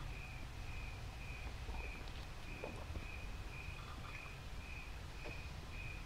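Faint, evenly repeated chirping of a cricket at one steady high pitch, about two chirps a second, over a low steady hum.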